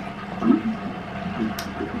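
A pause in talk filled by a steady low room hum and faint background noise, with a brief soft sound about half a second in.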